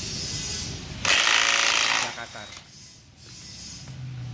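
Cordless impact wrench hammering for about a second, loosening the nut on a Honda PCX scooter's CVT pulley.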